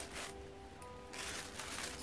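Faint clatter of loose plastic Lego bricks as a hand stirs them in a plastic bag, over a few faint steady background tones like quiet music.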